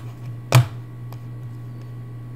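A computer mouse clicking once, sharply, about half a second in, with a couple of much fainter ticks, over a steady low electrical hum.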